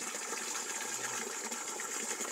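Water running steadily into a fish pond that is being filled.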